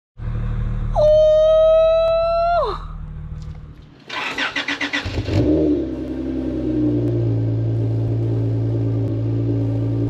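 A held tone slides down in pitch and stops about a third of the way in. Then a 3rd-gen Acura TL's V6 is started: the starter cranks with rapid pulsing for just over a second, the engine catches with a short flare and settles into a steady idle heard from the dual exhaust.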